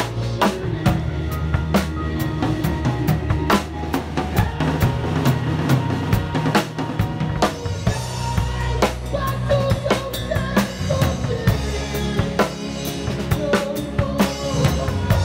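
Drum kit played along to a recorded song: a busy groove of snare, bass drum and cymbal strokes over the song's bass and melody.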